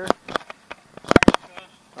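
Skateboard on concrete: a few sharp single clacks, then a quick run of loud clacks a little over a second in.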